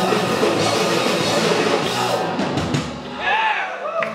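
Live rock band playing loud, with distorted electric guitars, electric bass and drum kit. The playing stops about two seconds in at the end of a song, with a falling bass slide and the instruments ringing out, and a few short rising-and-falling tones near the end.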